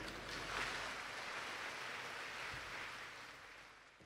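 Faint applause from a large audience, an even patter that dies away near the end.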